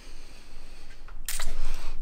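Handling noise from a handheld camera being moved: a short sharp click about a second in, then rubbing and rumble as it is swung round.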